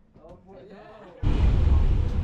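Faint voices in a train carriage. About a second in, the loud, steady rumble of a double-deck RER C commuter train running, heard from inside the carriage, cuts in suddenly.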